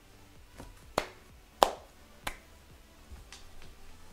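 Several sharp, irregularly spaced clicks, about six in all, the loudest about a second and a half in.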